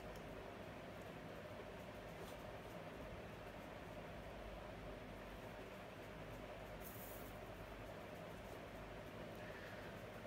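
Quiet room tone with a faint, brief swish about seven seconds in: a tarot card being laid down and slid across a wooden table.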